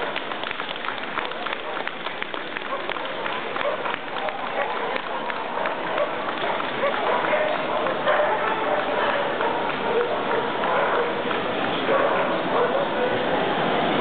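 Many people talking at once in a crowded hall, with scattered sharp hand claps, thickest in the first few seconds.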